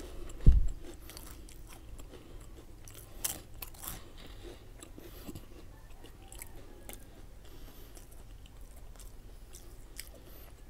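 Close-miked chewing of crisp rolled wafer sticks (Superstix), with sharp crunches about three and four seconds in and softer crunching after. A dull thump about half a second in is the loudest sound.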